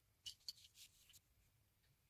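Near silence with a few faint clicks in the first second or so, from plastic Lego plates being set down and pressed onto a wooden strip.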